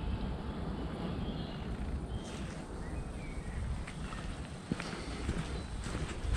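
Footsteps on a dry, leaf-covered dirt forest trail, under a steady low rumble of outdoor noise.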